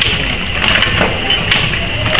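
MQD 18 II inner-and-outer tea bag packing machine running, a steady mechanical whir with repeated sharp clicks from its feeding and cutting mechanism.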